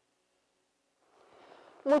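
Dead silence for about a second, then faint background noise rising, and a woman starts speaking near the end.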